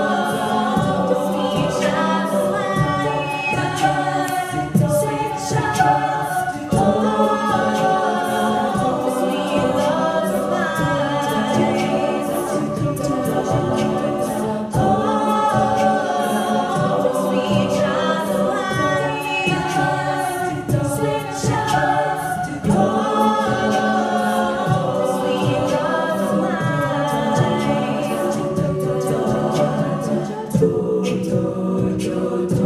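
All-female a cappella group singing in layered harmony into handheld microphones, amplified through the hall's speakers, with a steady percussive beat running under the voices.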